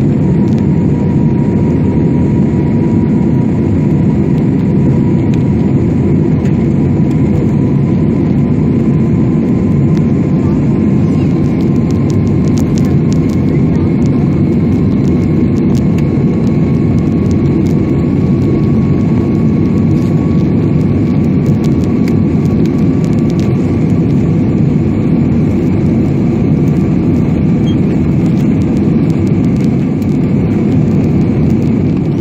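Jet airliner's engines and airflow heard inside the passenger cabin during the climb: a loud, steady, deep rumble with a faint whine that slowly rises in pitch.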